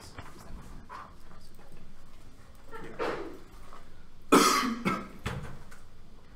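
A person coughing, a sharp cough about four seconds in with a smaller one just after.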